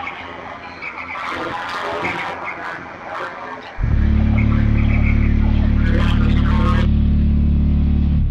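Mixed, cluttered sounds with some pitched tones, then a sudden loud, steady low hum that starts about four seconds in and cuts off near the end.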